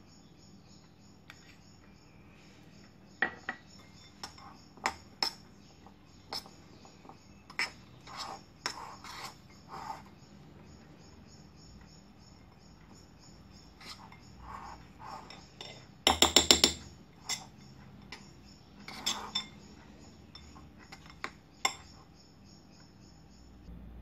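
A spoon clinking and scraping against a bowl at irregular intervals while stirring ground peanuts with honey into a sticky mass. There is a brief quick rattle of clicks about two-thirds of the way through.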